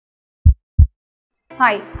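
Heartbeat sound effect: one double 'lub-dub' thump about half a second in, part of a steady beat of about one pair a second. Near the end, background music starts under a woman saying 'Hi'.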